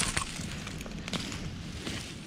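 Dry straw mulch and sweet potato vines crackling and rustling as a gloved hand pulls through them, with a few sharp snaps near the start and about a second in.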